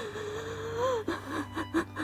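A woman's drawn-out, breathy crying cry, held on one pitch for about a second and rising at its end, followed by short broken voice sounds.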